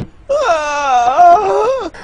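A dog's long whining moan, one unbroken cry of about a second and a half that wavers up and down in pitch.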